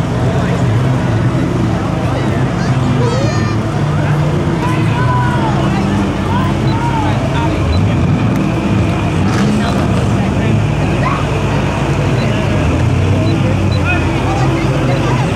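Low, steady rumble of slow-moving parade vehicle engines, under a continuous chatter of spectators' voices.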